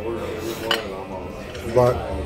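A metal fork clinks once against a plate, a sharp click about a third of the way in, amid light cutlery handling.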